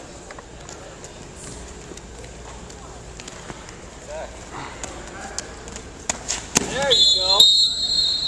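Wrestlers' shoes and bodies working on a gym mat, with scattered thuds and clicks and background crowd voices; about six seconds in it gets louder, with sharp knocks and a burst of high-pitched squeaking as the wrestlers tie up and drive into each other.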